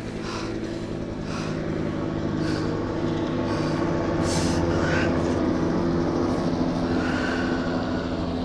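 Steady low drone of a vehicle running, heard from inside it, growing louder over the first few seconds, with a few brief hissing swishes over it.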